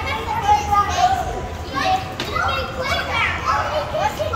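Children's voices, talking and calling out over one another, with indistinct chatter from other people in a busy indoor hall.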